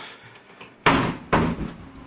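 A door shutting: two loud knocks about half a second apart.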